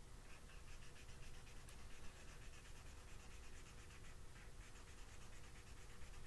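Felt-tip marker scribbling on paper in rapid, short strokes, faint.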